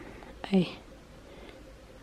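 A woman says one short word about half a second in, with a brief click just before it; otherwise quiet room tone.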